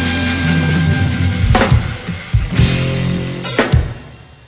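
Live frevo band with drum kit playing the last bars of a song: a held chord gives way to a few loud accented hits from the full band and drums, the last one near the end cutting off sharply.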